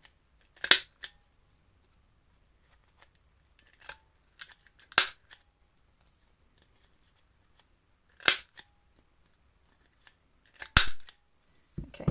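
Handheld plastic corner rounder punch, set to its 7 mm radius, snapping through paper four times, a few seconds apart: each press of the button is one sharp click as a corner is cut round. Faint paper-handling rustles come between the clicks.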